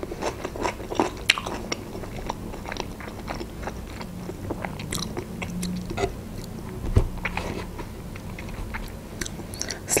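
Close-up chewing of a mouthful of food with the mouth closed: a run of small wet mouth clicks and smacks, with one soft low knock about seven seconds in.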